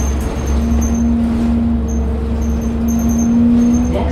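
Interior of a TTC city bus in motion: low engine and road rumble with a steady drivetrain hum whose pitch rises slightly near the end.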